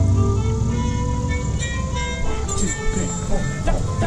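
Drum corps music: a long held chord sounds through the first half and dies away. Drum and mallet-percussion strikes then come in over the last couple of seconds, growing busier.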